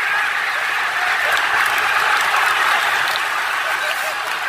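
A large football stadium crowd cheering, shouting and clapping together in celebration of a goal, loud and steady throughout.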